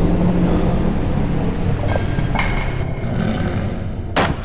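Low, steady sci-fi ambient drone that slowly fades, with a couple of faint ticks and a brief high tone about two seconds in.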